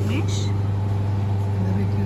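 Steady low electrical hum of a refrigerated cake display case, with a fainter steady tone above it.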